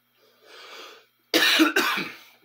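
A man coughs twice in quick succession, loud and sudden, after a short breath in about half a second in.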